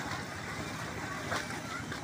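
Splashing footsteps wading through floodwater along a railway track, under a steady rush of wind on the microphone.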